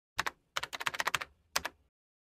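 Quick sharp clicks in the manner of keyboard typing: a pair, then a fast run of about eight, then another pair.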